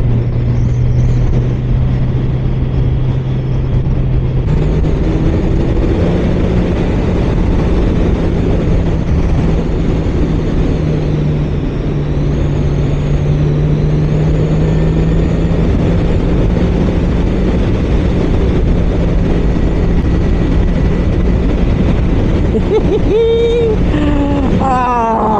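Kawasaki Z900's 948cc inline-four engine running at a steady cruise under wind rush. Its note steps up in pitch about four seconds in and then holds steady.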